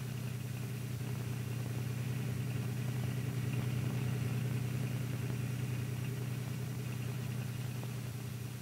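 Truck engine running steadily, a low, even drone that swells slightly midway.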